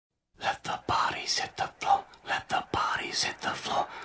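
A person's voice speaking in a breathy, whisper-like way, in short uneven bursts, the words indistinct.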